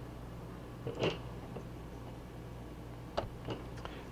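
Quiet steady low hum, with a soft brief sound about a second in and two small clicks near the end, from hands handling the power adapter's barrel plug and multimeter probes over the circuit board.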